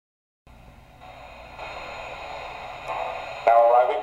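Station sound effects from the model locomotive's onboard speaker: a low background hiss with a faint steady hum rises, and near the end a recorded station announcer's voice begins through the small, tinny speaker.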